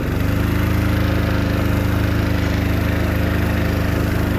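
Small motorbike engine running under throttle as the bike pulls away. Its pitch rises briefly as it starts, then holds a steady note.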